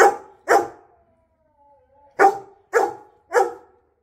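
A yellow Labrador retriever barking up at its owners: two sharp barks, a pause, then three more evenly spaced. The owner reads the barking as the dog angrily demanding that they get off the bed.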